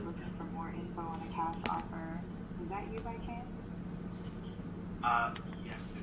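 A synthetic woman's voice from an AI cold-calling demo speaking in a played-back recording, fairly quiet, over a steady low hum.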